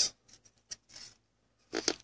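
Faint, brief scrapes and ticks of a stack of trading cards being handled in the fingers as one card is slid from the back of the stack to the front.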